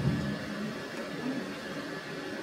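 A pause with no distinct sound: faint, steady background hiss of room tone.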